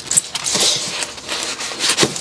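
Foam packing and cardboard scraping and rubbing as a portable power station is worked free of its foam insert and lifted out of the box. The scraping starts sharply and runs on in dense, uneven strokes.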